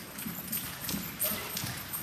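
Hoofbeats of a Saddlebred horse trotting in harness on the soft dirt floor of an indoor arena, a quick run of dull, low thuds.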